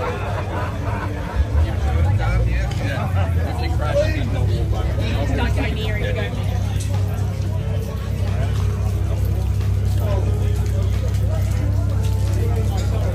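People chatting in the background, with music playing over a steady low rumble.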